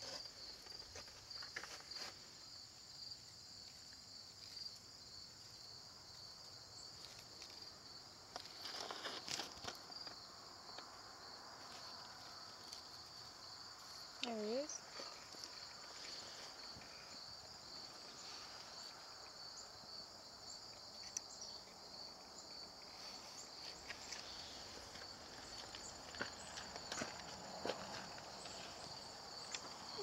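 A high, finely pulsing trill from a chorus of insects runs steadily throughout. A few soft scrapes and taps of fingers against weathered wood come through now and then, the loudest about nine seconds in.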